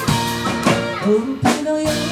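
Live band of electric guitar, bass, keyboard and drum kit playing a pop-rock song, guitar and drums to the fore, with sharp drum hits on the beat.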